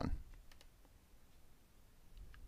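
A few faint computer mouse clicks in the first second, then the low hiss of a quiet room.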